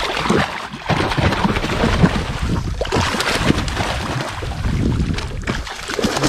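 A hooked dogtooth tuna thrashing and splashing at the surface against the side of the boat, a continuous rush of splashing water with many sharp slaps, mixed with wind on the microphone.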